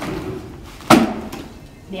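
The leg-and-wheel frame of a Doona car seat stroller folds up under the seat for car-seat mode, with a single sharp clunk about a second in.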